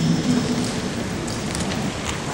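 Steady background hiss and room noise of a large hall, in a pause between phrases of a man's speech, with a brief trace of his voice near the start.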